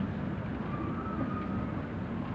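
Steady low background noise of an old broadcast soundtrack during a gap in the commentary, with a faint thin tone briefly in the middle.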